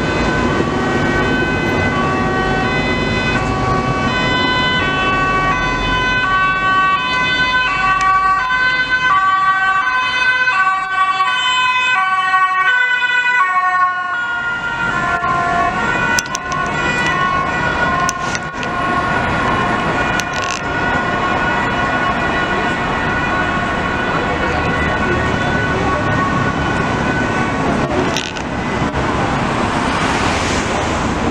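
Ambulance two-tone siren, loud, switching back and forth between a high and a low pitch. About halfway through, the alternation gives way to a steadier held tone over passing traffic.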